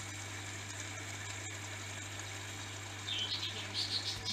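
Steady low hum with an even hiss: aquarium air pumps running and sponge filters bubbling.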